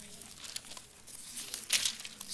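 Thin Bible pages rustling as two people leaf through them by hand, with a sharper swish of a turned page near the end.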